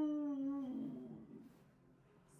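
A person's drawn-out, wordless vocal sound, a long held 'ooh' or hum that wavers slightly in pitch and fades out within the first second.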